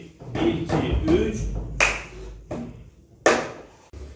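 A slow rhythm of hand claps and taps on a wooden school desk, about six sharp strokes with gaps between them, the one near the end the loudest: the first step of a cup-rhythm pattern, counted 1-2, 1-2-3.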